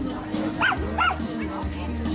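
A dog giving two short, high yips in quick succession near the middle, over background music.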